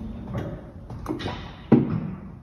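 Scattered light clicks and knocks from a trolley jack being let down and handled beside the car, with a single louder, short knock near the end.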